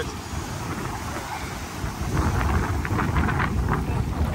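Wind buffeting the microphone over small Baltic Sea waves washing up over the sand and around bare feet, the wash growing louder about halfway through.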